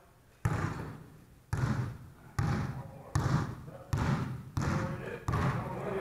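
A basketball is dribbled on a hardwood gym floor, about eight bounces slightly under a second apart and a little quicker toward the end, each echoing in the gym.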